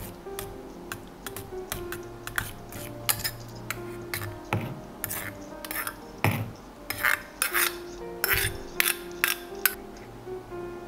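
Metal slotted spoon scraping and clinking against a stainless-steel mesh strainer, pressing miso through the mesh to dissolve it into the soup. The clinks come in quick irregular strokes and grow busier and louder in the second half.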